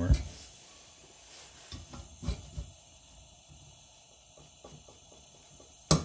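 A few light metal clicks and knocks from a wrench working a check-valve removal tool in a Coleman 220E lantern's fuel tank, turning the old check valve out, with a sharp click just before the end.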